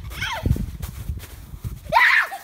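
A young child's high-pitched squeals: one falling squeal early on, and a louder one rising right at the end. A low rumbling noise runs underneath.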